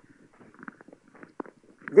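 A short lull in a lecture: faint room noise with a few soft, scattered clicks and knocks, before speech resumes at the very end.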